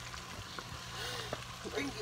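Breaded onion rings deep-frying in a pot of oil heated to about 350 °F: a steady sizzling hiss of bubbling oil.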